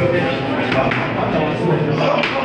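Boxing gloves smacking onto focus mitts in a few sharp hits, over voices.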